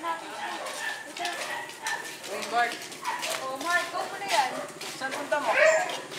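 A dog barking repeatedly in short barks, with voices in the background.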